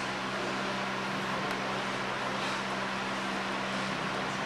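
Steady background hiss with a low, even hum. There are no distinct knocks, voices or other events.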